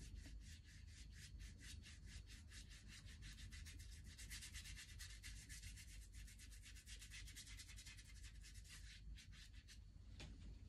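Paintbrush scrubbing back and forth across watercolour paper: a faint, rapid rasp of about five strokes a second that stops shortly before the end.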